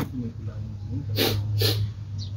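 A man blows out two sharp, hissing breaths about half a second apart, a reaction to the burn of the green chilli pepper he is eating. A steady low hum runs underneath.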